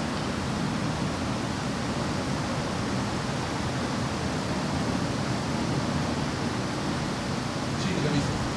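Steady, even hiss of background noise picked up by open microphones, with nothing else standing out.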